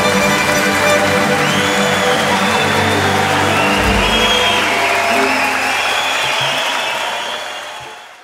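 A live audience clapping and cheering, with high whoops, as the closing chord of a small orchestra rings out under it; the chord gives way after about four seconds, leaving the applause, which fades out near the end.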